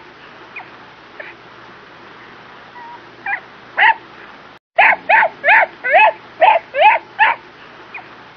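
A puppy's high yips: a few scattered ones, then, after a brief break in the sound, about nine in quick succession, roughly three a second. A faint steady hum lies underneath.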